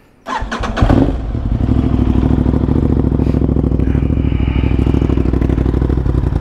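Aprilia RS660's parallel-twin engine starting: a brief crank, it catches within a second with a quick rev, then settles into a steady idle through an aftermarket SC-Project exhaust.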